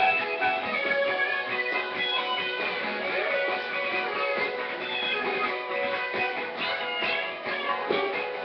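Guitar playing an instrumental break in a country-rock song: strummed chords with a melodic lead line running over them.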